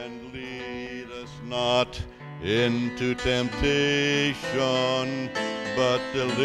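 Grand piano accompaniment with a man singing a solo over it, amplified through a microphone. The piano plays alone at first, and the voice comes in about a second and a half in with long held notes.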